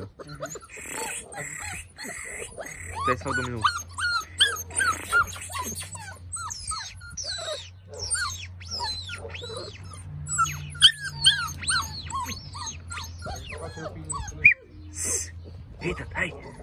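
Six-week-old American Staffordshire Terrier (Amstaff) puppies whining and yelping in a quick series of short, high-pitched cries that rise and fall. A steady low hum runs underneath.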